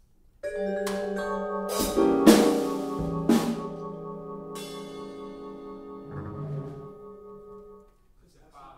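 Chamber jazz quartet of piano, vibraphone, double bass and drums coming in together about half a second in on a loud sustained chord, with sharp drum and cymbal strikes in the next three seconds. The ringing chords decay and the music breaks off abruptly near the end after only a few seconds: a false start of the piece.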